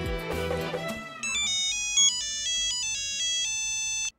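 Background music dies away in the first second, then a mobile phone ringtone plays: a high electronic melody of short stepped notes, cut off suddenly at the very end.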